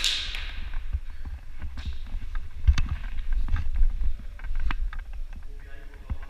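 Airsoft gunfire in an indoor arena: a sharp shot with a hissing, echoing tail right at the start, followed by scattered light clicks and taps over a low rumble of movement, with faint voices near the end.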